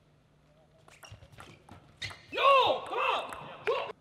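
Table tennis ball clicking off bats and table in a short rally, then a player's loud celebratory shout after winning the point: two or three long cries that rise and fall in pitch.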